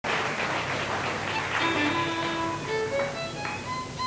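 Fiddle sounding a few long single notes that step upward in pitch. For the first second and a half a noisy wash covers them.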